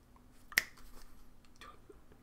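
A single short, sharp click about half a second in, over quiet room tone with a faint steady hum.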